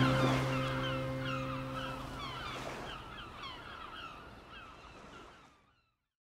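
The last held chord of soft background music dies away over the first two seconds or so, while a flock of birds calls over and over in short, curving cries. The whole sound fades out about five and a half seconds in.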